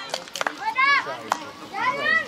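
Children's voices shouting and calling out, with two loud high-pitched calls, one about a second in and one at the end, and a few sharp clicks.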